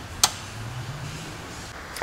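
A single sharp click about a quarter of a second in, as the landing-light switch is flipped, over a faint low hum.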